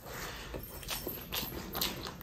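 Close-up wet chewing of a handful of rice and boiled egg eaten by hand, with three sharp mouth smacks spread through the second half.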